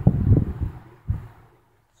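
Low rumbling and rustling handling noise on the microphone as the device is moved in the hand, in a couple of short bursts.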